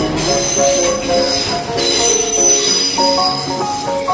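TransPennine Express Class 185 diesel multiple unit passing at speed, its wheels squealing in a steady high whine on the rails. Upbeat music plays over it.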